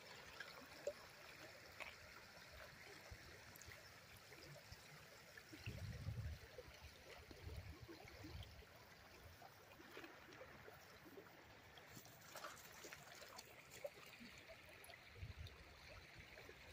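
Near silence: faint river water flowing over a shallow gravel riffle. There are a few soft low thumps around the middle.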